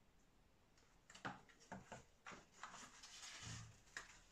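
Mostly near silence, then from about a second in a few faint taps and scrapes of fingers handling a balsa wing frame and the hardwood blocks glued into it.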